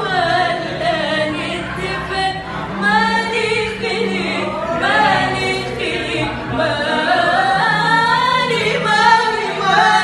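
Two women singing a cappella together, an ornamented melody with wavering, bending runs and no instrumental accompaniment.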